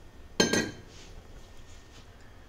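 A single sharp clink of metal kitchenware about half a second in, ringing briefly, then only a faint low background.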